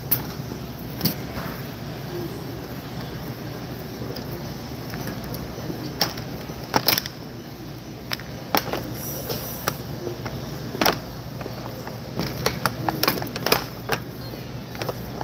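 Shopping cart being pushed across a hard store floor: a steady rolling rumble with scattered sharp clacks and rattles, several close together near the end.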